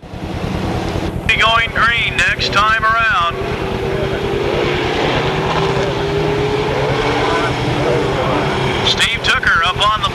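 Engines of a field of four-cylinder mini stock race cars running together as the cars roll past at pace speed, a steady dense engine drone. One engine note sags slowly in pitch through the middle.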